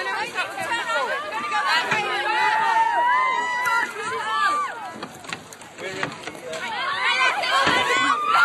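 A child's high-pitched voice, talking and calling without clear words, louder again near the end.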